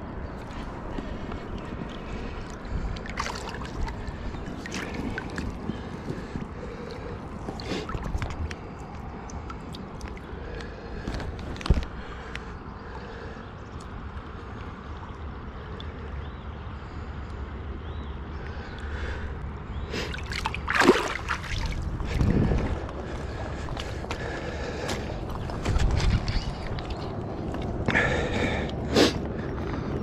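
Shallow river water lapping and gurgling over stones, with scattered splashes and knocks from a trout being handled in the water, over a steady low rumble. The louder splashes come in the second half.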